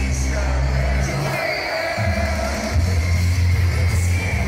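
Loud live heavy rock music from a stage PA, heard from within the crowd. Heavy held bass notes drop out for about half a second near the middle, then return.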